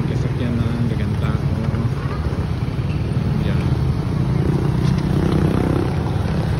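A motorcycle engine idling close by, steady, swelling slightly a little after four seconds in, with people's voices in the background.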